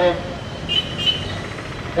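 A man's voice over a microphone finishes a phrase, followed by a pause of steady outdoor background noise. Two brief high-pitched tones sound close together about a second in.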